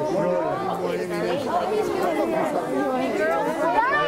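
Several people talking at once, their voices overlapping into steady chatter with no single clear speaker.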